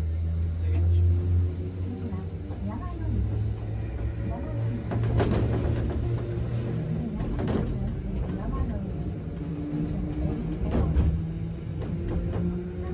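Tram running along its track, with the low hum of its motors, strongest as it pulls away, and a few sharp clacks of the wheels over rail joints and points.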